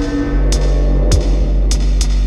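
Steppers dub instrumental: a deep, steady sub-bass line under sharp drum strikes a little under twice a second, with a held tone fading out just after the start.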